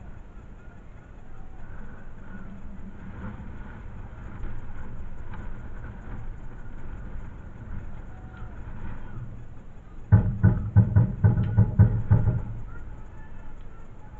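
Steady low outdoor background noise. About ten seconds in comes a rapid run of about nine loud thumps over two seconds.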